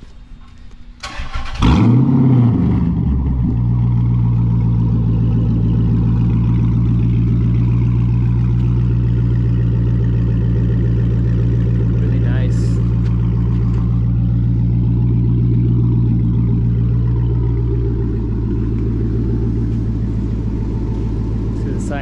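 A 2009 Dodge Charger SRT8's 6.1-litre HEMI V8 is cranked by the starter and fires about a second and a half in. Its revs flare up and drop back, then it settles into a steady idle that eases slightly lower near the end.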